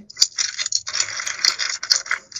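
3x3 speedcube being turned rapidly by hand: a dense, fast run of plastic clicks and rattling from the layers snapping round.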